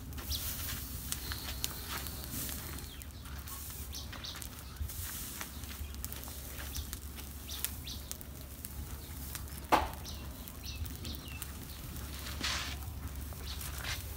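Pile of burning straw crackling with scattered small clicks, over a steady low hum, with a few faint bird chirps. A single sharp knock about ten seconds in is the loudest sound.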